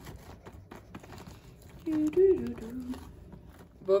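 Light scattered clicks and scrapes of a spoon stirring a thick chocolate and whey protein paste in a small container. A short bit of a woman's voice comes about halfway through.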